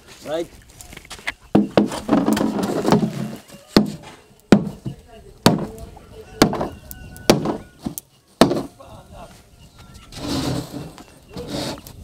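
Machete chopping: a series of sharp blows about a second apart through the middle of the stretch.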